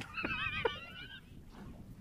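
A high, quavering whinny-like call lasting about a second, its pitch wobbling throughout, with a couple of faint clicks under it.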